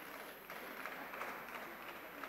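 Faint, scattered applause from deputies on the benches of a parliamentary chamber.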